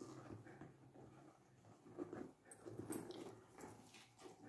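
Faint handling noises of a leather handbag: soft rustling with a few small clicks as hands open up its compartments, a couple of seconds in.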